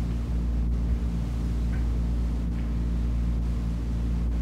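Steady low electrical hum with background hiss in an old 1950s recording of a room. There are no distinct events.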